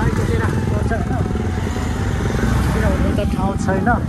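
Motorcycle engine running steadily while riding, with people's voices over it.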